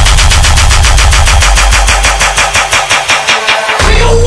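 Electronic dance music build-up in a dubstep mix: a rapid, even roll of repeated drum hits, about ten a second. The bass thins out in the second half and drops away just before the end.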